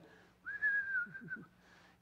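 A man whistling one held note for about a second, starting about half a second in, wavering slightly and sagging a little in pitch: a casual, carefree whistle.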